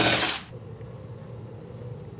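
Cordless driver running as it backs a screw out of an MDF spoilboard, cutting off about half a second in. A low steady hum follows.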